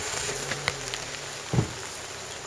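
Rain falling steadily, a soft even hiss with a sharp drop tick about two-thirds of a second in, and a short low sound about a second and a half in.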